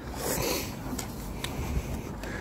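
A soft swish of a cloth wiped over wet car paint and grille, with a few faint light clicks.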